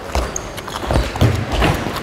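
Handballs bouncing on a wooden sports-hall floor: several irregular thuds, with the hall's echo.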